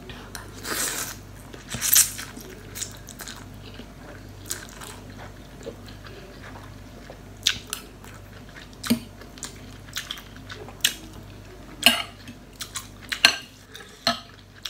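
Close-up eating sounds: instant noodles slurped from a fork about a second in, then chewing with a series of short sharp mouth and fork clicks.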